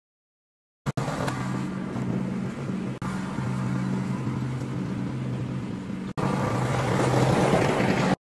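Gasoline snowblower engine running steadily, in three stretches separated by brief cuts about three and six seconds in; the last stretch is louder and noisier.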